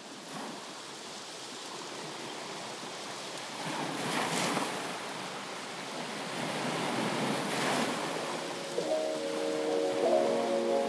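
Ocean surf fading in, with two waves washing in about four and eight seconds in. Music starts near the end.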